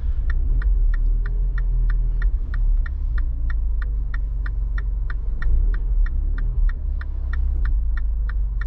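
Mini Cooper S's turbocharged four-cylinder idling with a steady low rumble, heard from inside the cabin, while the turn-signal indicator ticks evenly about three times a second.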